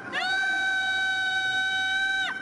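A woman curler's long, high-pitched shout, held on one steady pitch for about two seconds: a call to her sweeping partner.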